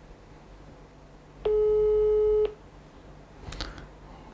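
Smartphone on speakerphone playing a single ringback tone, one steady beep about a second long, while it rings a GSM relay controller board.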